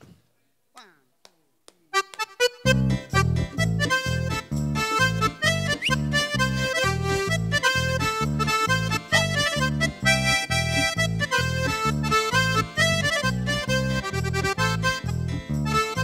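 Red bayan (button accordion) and a small drum kit playing a brisk instrumental introduction with a steady bouncing beat, starting about two seconds in after a short quiet.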